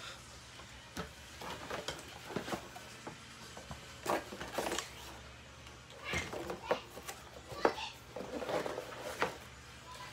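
Cardboard packaging box being handled and rummaged through: a run of rustles, scrapes and light knocks, the sharpest knock about seven and a half seconds in.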